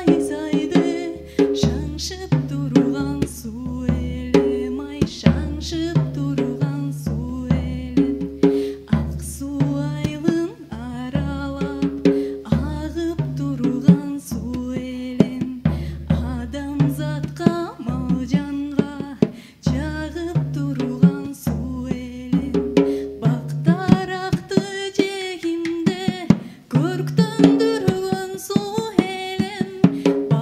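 A live band playing a Kyrgyz folk song: a drum kit played with mallets over a repeating bass line, with a woman singing into a microphone. Her voice comes forward in the last several seconds.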